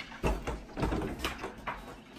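Handling noise: a few irregular knocks and clicks, some with a low thud.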